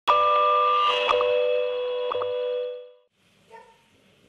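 A short electronic chime chord, several steady tones sounding together, starts abruptly, carries a few soft clicks and fades out after about two and a half seconds: an opening sting. A faint brief sound follows near the end.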